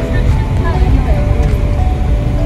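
Car rumbling over a rough gravel road, heard from inside the cabin, under music with long held notes.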